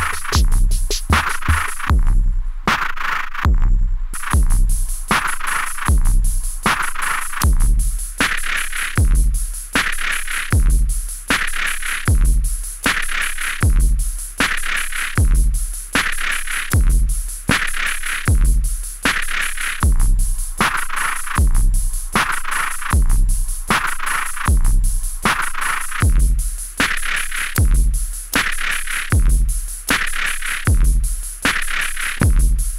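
Modified Ace Tone Rhythm Ace FR-8L analogue drum machine, patched through a pin matrix with a Kesako Player sample module, playing a looping rhythm of deep kick thumps and noisy, hissy hits. The upper hits drop out briefly a couple of seconds in, then the full pattern runs on.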